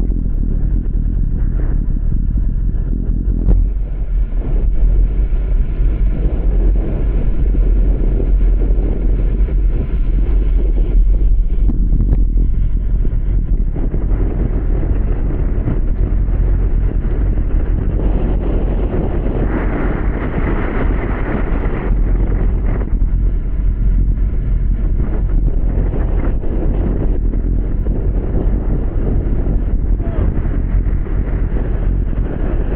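Wind buffeting the microphone of a camera on a bicycle moving at racing speed on a wet road: a steady, heavy low rumble, with a brighter hiss for a couple of seconds about two-thirds of the way through.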